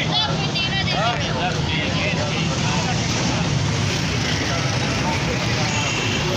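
Busy street-market ambience: a steady hum of traffic with background voices, a few words of nearby talk in the first second or two.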